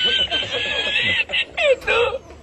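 A high-pitched snickering laugh: a held, wavering note, then short falling giggles in the second half.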